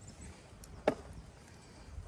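A single sharp knock a little under a second in, over a steady low rumble of wind on the microphone.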